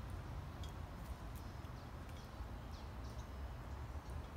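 A few faint, short bird chirps scattered through a low, steady background rumble of outdoor ambience.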